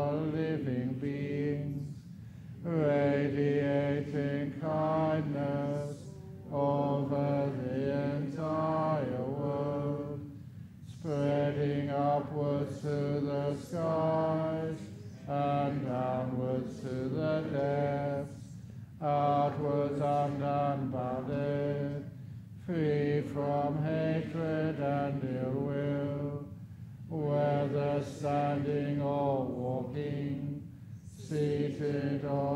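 Buddhist chanting in Pali by a monk: a male voice recites on a nearly level, low pitch in phrases of about three to four seconds, each followed by a short breath pause.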